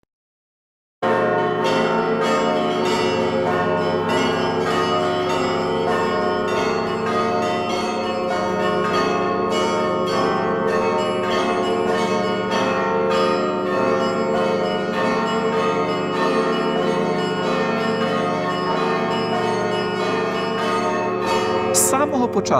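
Church bells pealing: many bells struck over and over, their tones overlapping in a continuous ringing that starts suddenly about a second in.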